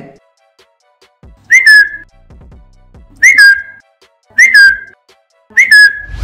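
A person whistles four short times, evenly spaced. Each whistle is a quick upward swoop that settles into a brief held note. The whistles are the signal that switches on the phone's flashlight in a whistle-activated flashlight app.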